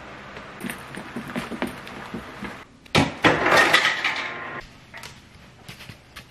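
Clattering and rustling as household containers are handled, with a louder rattling burst lasting about a second and a half in the middle.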